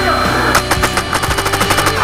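Custom Automag paintball marker with an APE Rampage setup firing a fast burst, about ten shots a second, starting about half a second in.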